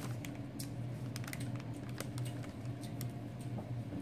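Irregular light clicks and rustles of a paper store receipt being handled and looked through, over a steady low hum.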